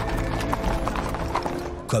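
Horses' hooves clip-clopping, a mounted troop at a walk, with background music of held notes underneath.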